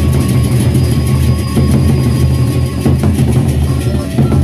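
Gendang beleq ensemble playing: large Sasak double-headed barrel drums beaten in a dense, loud, continuous roll, with thin ringing metal tones above it.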